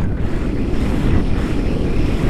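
Airflow from gliding flight buffeting a pole-mounted camera's microphone: a steady, loud, low wind rumble.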